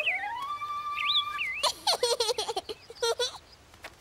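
A person whistling to imitate birds: one note slides up and is held for about a second, then comes a quick run of short warbling whistles that fades out near the end.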